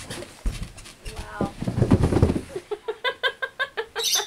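A person zipped in a sleeping bag sliding down carpeted stairs: a few light knocks, then a run of bumps and a low rumble as the body drops over the treads, about two seconds in. Rapid bursts of laughter follow near the end.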